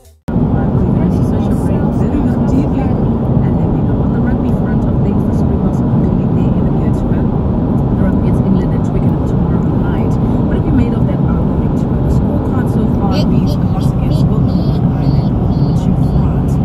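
Steady low rumble of road and engine noise heard inside a moving car's cabin. It starts suddenly just after the start and holds at an even level.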